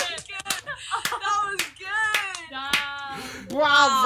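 Hand clapping: a few irregular, sharp claps from a small group, with excited, wordless voices and laughter rising over them and loudest near the end.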